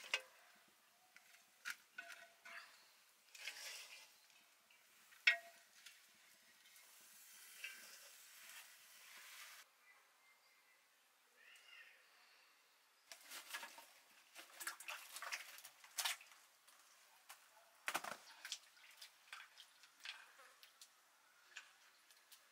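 Faint, scattered clicks and knocks of kitchen utensils and clay pots being handled, with a denser run of small clatter a little past the middle.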